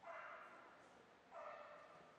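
Two short animal calls, faint, about a second and a half apart.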